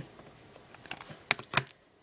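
Trading cards being handled: a few light clicks and taps, the two sharpest a little past the middle.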